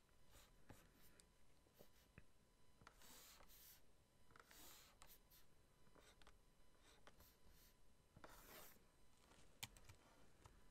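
Faint scratching of a stylus pen drawn across a graphics tablet, in a few short strokes, with light clicks of the pen tip tapping down between them.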